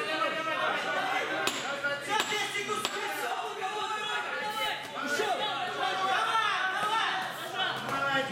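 Several voices shouting and talking over one another in a large echoing hall, the calls of spectators and corner people at a boxing bout. A few sharp smacks come through about one and a half, two and three seconds in.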